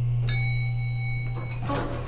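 A single bell-like ding, as of an elevator arriving at a floor, rings out about a quarter second in and fades after just over a second. It sounds over a steady low drone of background score, with a brief rustle near the end.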